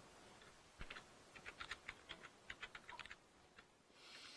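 Faint typing on a computer keyboard: a short run of irregular key clicks.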